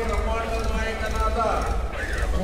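A group of men chanting devotional names of Ayyappa in unison (namajapam), drawing out long held notes with a slow glide near the end.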